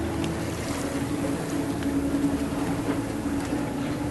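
A boat's engine running steadily, a constant low hum with a droning tone, heard from inside the boat's cabin.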